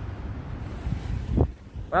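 Wind buffeting the microphone of a handheld phone: a steady low rumble that swells into a strong gust about one and a half seconds in.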